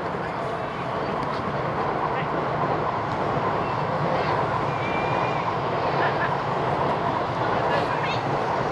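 Steady outdoor rushing noise with players' scattered distant calls and shouts during a futsal game.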